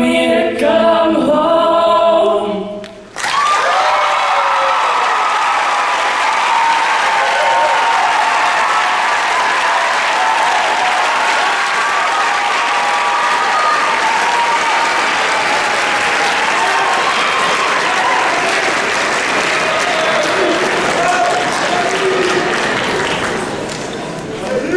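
Two voices hold the last sung note of the song, which ends about three seconds in. The audience then breaks into loud applause with cheering and whoops that carries on and eases slightly near the end.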